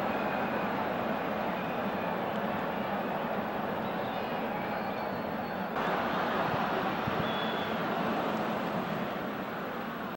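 Steady stadium crowd noise from a football match broadcast, a continuous even roar, which changes abruptly about six seconds in at an edit.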